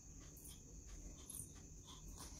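Near silence: room tone with a faint steady high-pitched whine.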